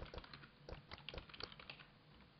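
Computer keyboard typing: a quick run of faint keystrokes, about six a second, thinning out near the end.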